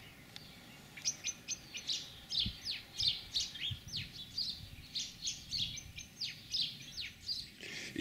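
Small birds chirping: a quick series of short, high, downward-sweeping chirps, several a second, starting about a second in.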